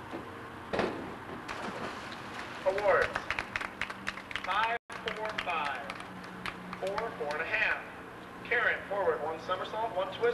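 Indistinct voices of several people talking, with a click about a second in. The sound drops out completely for an instant just before the midpoint, where the tape cuts, and a steady low hum runs under the voices after it.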